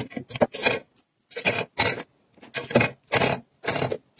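Clear acrylic makeup brush organizer being handled, its lid and tilting compartment worked and brushes put in, giving a quick run of short scraping rubs of hard plastic, each under half a second, with brief silent gaps between.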